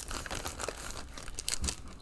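Plastic packaging bag crinkling and rustling as it is handled, with a few sharper crackles about one and a half seconds in.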